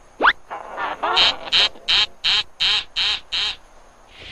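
Cartoon sound effects: a quick rising whistle, then a run of about seven short, evenly spaced pitched blasts, roughly two and a half a second, stopping shortly before the end.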